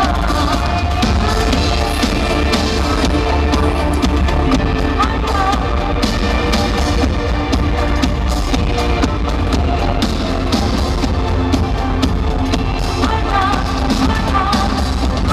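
Live electronic pop music over an arena sound system, with heavy bass and a steady beat, and a woman singing at times.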